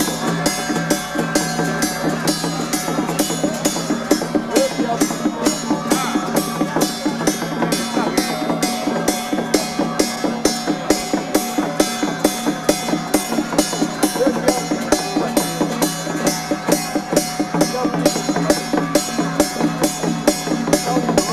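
Traditional Taiwanese temple procession music: percussion struck in a steady beat, about two to three strikes a second, over a held steady tone, with voices of the crowd.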